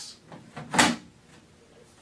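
A Bio Bidet BB1000 plastic electronic bidet seat is slid onto its catch plate and clicks into place once, sharply, just under a second in: the sign that it has latched onto the mount.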